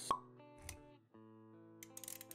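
Intro sound effects over music: a sharp pop right at the start and a dull low thump a little over half a second later. The music dips briefly about a second in, then resumes with sustained notes.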